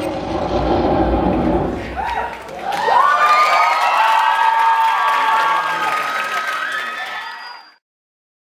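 Audience cheering, with loud, sustained high-pitched screams rising from about three seconds in; it all fades out near the end.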